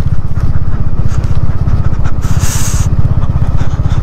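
Motorcycle engine running as the bike rides over a rough, stony gravel road, with a steady, even low pulsing from the engine. A short hiss comes in about two seconds in.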